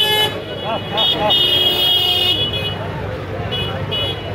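Crowded street market: voices shouting over traffic noise, with a high-pitched vehicle horn sounding in several toots, the longest held about a second near the middle.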